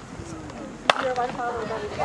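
A baseball bat striking a pitched ball: one sharp crack about a second in, followed by spectators shouting.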